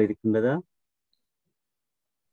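A voice speaking for about half a second, then near silence for the rest.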